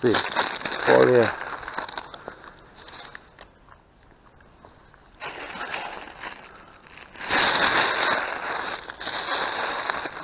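Plastic rubbish bag rustling and crinkling as crisp packets and other litter are pushed into it and the bag is shaken, loudest in a burst about seven seconds in. A short word is spoken about a second in.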